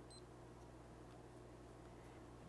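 Near silence: room tone with a steady low hum, and one short, faint high beep from a Keto-Mojo blood ketone meter just after the start as the test strip goes in.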